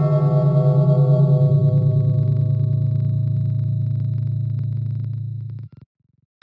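A single low ringing tone, a musical sound effect, held for about five and a half seconds with a slow wavering beat as it fades, then cut off near the end.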